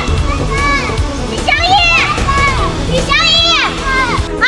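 Voices calling out a boy's name in long, high-pitched shouts, three calls in a row, over background music.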